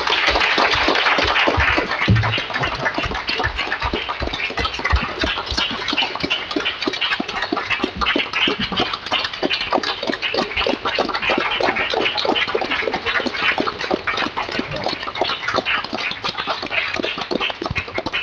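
Audience applauding: many people clapping at once, loudest at the start and thinning toward the end.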